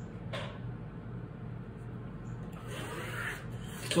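Faint handling sounds over quiet room tone: a wooden ruler and canvas panel being moved on a table, with a brief soft scrape about a third of a second in and a soft rustle near three seconds.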